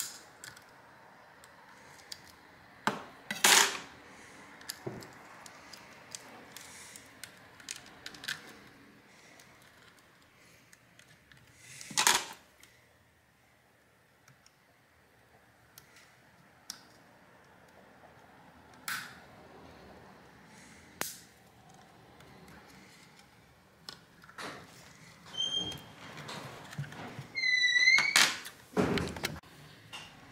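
A pick tool scraping and prying at the plastic housing of a portable Bluetooth speaker and the parts being handled: scattered clicks, scrapes and knocks, with louder knocks about three seconds in, about twelve seconds in and near the end. Near the end there is a short squeak that bends in pitch, as of plastic parts rubbing.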